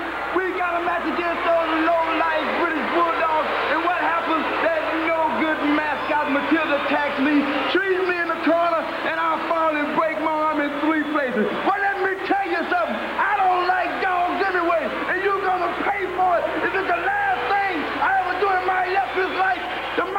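Only speech: a man talking without pause.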